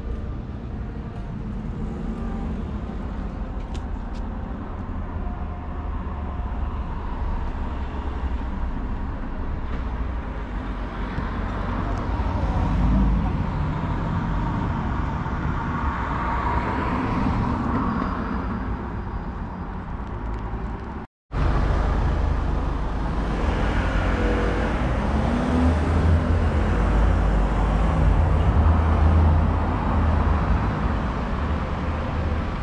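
City street ambience: a steady hum of road traffic with a low rumble underneath. It cuts out for a moment about two-thirds of the way through, then carries on a little louder.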